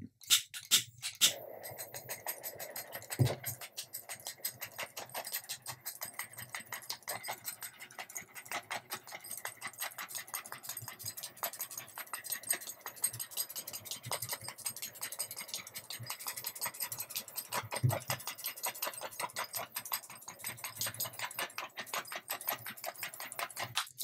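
Small handheld gas torch running with a steady hiss and a rapid fluttering crackle, its flame passed over wet epoxy resin to heat it and make the tinted resin run more freely. A few sharp clicks come right at the start, before the hiss sets in.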